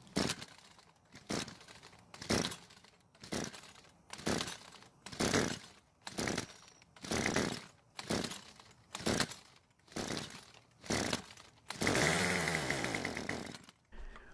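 Snapper gas string trimmer pull-started over and over: about a dozen rope pulls roughly once a second, each giving a short burst of cranking with no start. Near the end the small two-stroke engine catches and runs for about two seconds, then dies, the sign of a trimmer that is hard to start and will not stay running.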